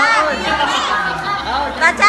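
Several people's voices at once, overlapping chatter.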